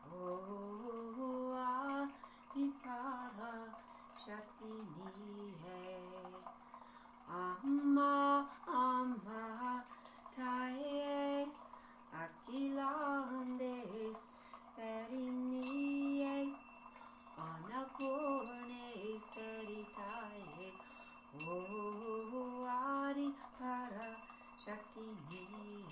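A woman sings a slow devotional song in long, wavering held notes over a steady drone. In the last third, a small chime is struck again and again, several times a second.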